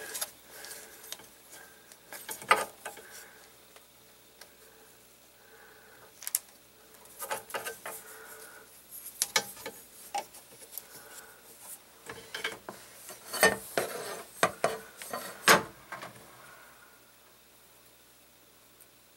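An eighth-inch steel Strong-Tie plate handled against a plastic cable drag chain and machine frame: scattered metallic clicks, taps and rubbing, with the sharpest knocks about thirteen to fifteen seconds in.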